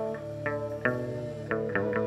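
Instrumental introduction to a hát văn (chầu văn) song: a plucked string instrument plays single notes with bent, wavering pitches over a sustained low accompaniment.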